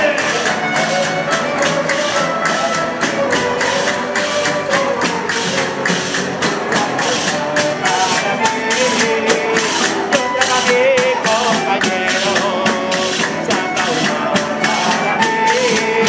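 A Spanish folk cuadrilla playing a Christmas carol (villancico) on violins and guitars, with a tambourine shaking out a steady, rhythmic jingle throughout.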